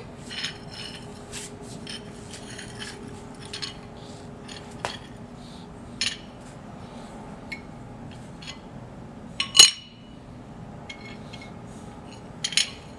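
Flat toy pieces being laid and shifted on a tiled floor: scattered light clacks and scrapes, with one sharp, louder clack about nine and a half seconds in.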